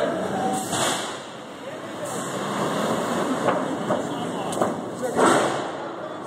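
Voices and street noise on a busy city block, with a loud, short burst of noise about five seconds in.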